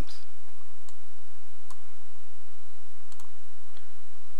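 A few sharp computer mouse clicks, spaced out with two close together near the end, over a steady low hum.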